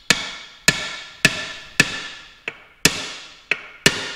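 Hammer tapping a countershaft into a Muncie four-speed transmission's aluminium case: about eight sharp metal-on-metal taps, roughly two a second, each ringing on briefly, two of them lighter than the rest.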